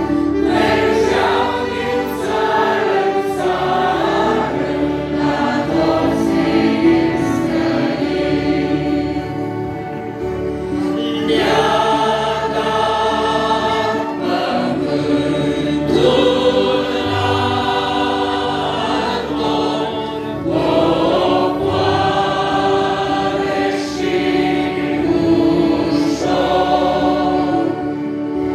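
Congregation and choir singing a hymn in Romanian, accompanied by accordions, in phrases with short breaths between them.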